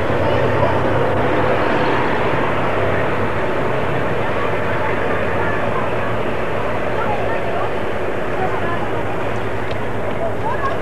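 A vehicle's engine running steadily, with indistinct voices over it.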